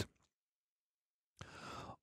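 Near silence, then a short breath drawn in by a man, about half a second long, near the end, just before he speaks again.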